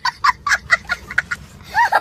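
A young child laughing hard: a fast string of short, high 'ha' sounds, several a second, then a few longer laughs near the end.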